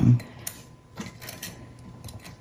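Fine steel tweezers clicking and tapping against a soft soldering firebrick and small silver pieces as they are set in place: a few faint, scattered ticks.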